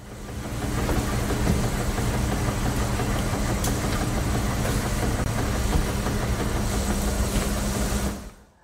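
Film soundtrack played back from an HDMI capture: a steady low machine hum with a dense rumble, heard as laundromat ambience, and a brief dropout about five seconds in, the small audio glitch left where the split capture files were joined.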